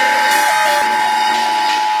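Steady two-tone emergency broadcast alert tone, a loud, sustained electronic whine held without a break, sampled in a dubstep track.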